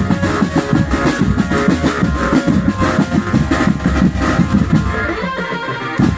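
A drum band playing a dangdut-style song live: dense, fast drumming with a sustained melody line over it. The low drums briefly drop away near the end.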